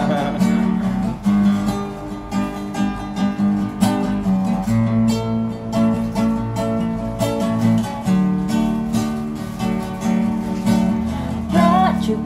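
Acoustic guitar strummed in steady, even chord strokes, with the chords changing every second or two.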